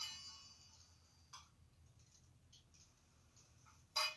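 Altar vessels clinking as they are handled: a ringing clink at the start, a faint tap about a second in, and a louder ringing clink at the end, with quiet room tone between.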